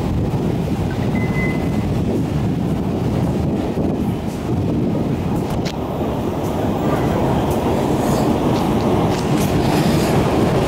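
Metro station ambience: a steady, loud low rumble. A short high beep sounds about a second in.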